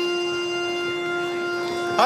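An accordion holds one long steady note, ending near the end as the song's next sung line begins.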